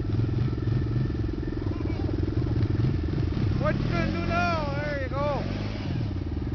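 Can-Am Renegade ATV engine running at steady, held revs while its rear wheels spin and dig into sand. A person's voice calls out over the engine from about four seconds in to near the end.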